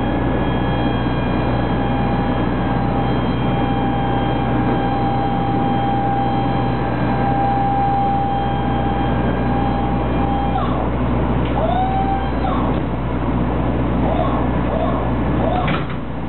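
Powered lift mechanism of an exhibition trailer's fold-out floor section running as it raises the wooden floor panel up into a wall: a constant motor hum with a steady whine. The whine stops about ten seconds in, and a few short squeaks follow near the end.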